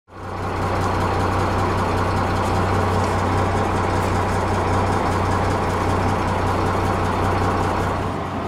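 A motor vehicle's engine idling steadily with a low, even hum, fading in at the start.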